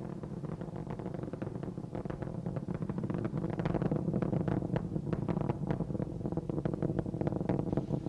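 Space Shuttle Discovery's solid rocket boosters and main engines during ascent: a continuous low roar full of dense crackle, growing slowly louder.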